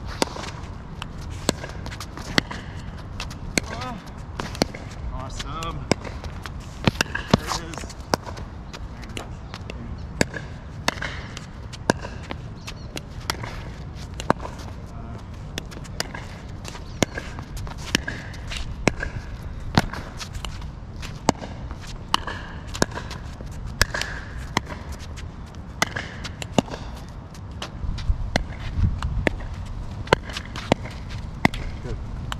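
Pickleball rally drill: the sharp pops of a hollow plastic pickleball being struck by paddles and bouncing on the hard court, one to two a second, irregularly spaced.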